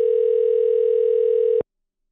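Telephone dial tone, a steady single tone that cuts off suddenly about a second and a half in.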